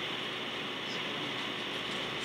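Steady hiss from a faulty recording, an even noise with no distinct events in it.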